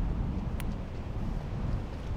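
Wind buffeting an outdoor microphone: a steady low rumble, with one brief click about half a second in.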